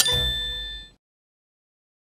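A single bright metallic ding, struck once, that rings on in several clear tones and fades out within about a second, followed by silence.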